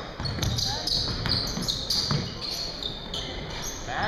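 Basketball bouncing on a court in a large, echoing gym, with short high squeaks and voices in the background.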